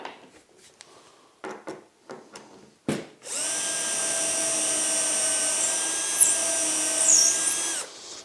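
Cordless drill running at one steady speed for about four and a half seconds, boring a shallow hole into the workbench top through a drill guide, then stopping just before the end. Before it come a few light clicks of the guide and bit being set in place.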